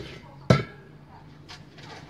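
A single sharp knock about half a second in, then a couple of faint clicks.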